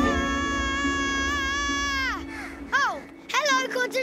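A cartoon rabbit character's long, high scream, held for about two seconds and then falling away, followed by a few short cries of alarm. Background music and a low rumble play beneath.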